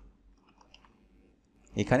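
Faint computer keyboard typing: a few soft, scattered key clicks, before a man's voice starts near the end.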